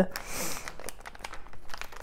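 Crinkling of a sealed plastic blind bag squeezed and kneaded by hand while feeling the small plastic horse figure inside. The crinkle is loudest in the first half second and then softer.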